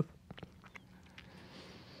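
Quiet room with a few faint, scattered wet mouth clicks from someone holding a sour hard candy in their mouth.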